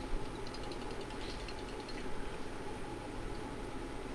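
Steady low background noise with no distinct event, and a few faint high flecks in the first second and a half.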